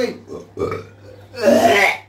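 A man belching and retching loudly: a short heave about half a second in, then a longer, louder one about a second and a half in.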